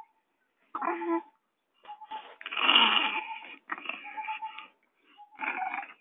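A baby vocalising in short breathy bursts, the loudest and noisiest about three seconds in.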